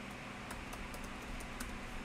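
Typing on a computer keyboard: a handful of irregularly spaced, fairly quiet key clicks.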